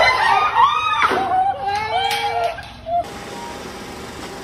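People's voices calling out with strongly rising and falling pitch, which cut off suddenly about three seconds in. Steady, even noise follows.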